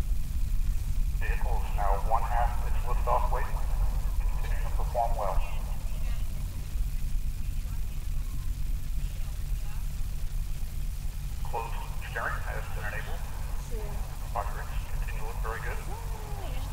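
Distant people talking in two spells, early and late, over a steady low rumble.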